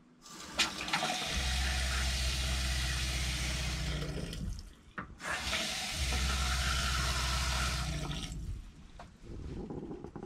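Kitchen faucet running water into a stainless steel sink, turned off briefly about halfway through and then on again. Under each run a low steady hum starts shortly after the water: the trailer's water pump running to keep up pressure.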